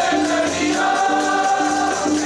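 Sikh kirtan: a harmonium with several voices singing together, over a steady beat about twice a second.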